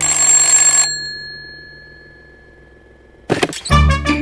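A bell rings in a rapid burst for just under a second, and its tone dies away over the next second or two. Cartoon music with a bouncy beat starts near the end.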